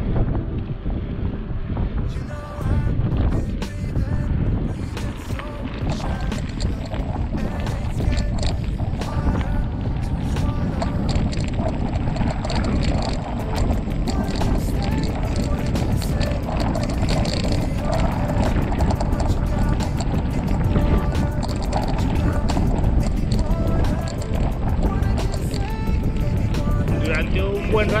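Wind buffeting the microphone of a camera on a moving bicycle, a steady low rumble throughout, with music playing underneath.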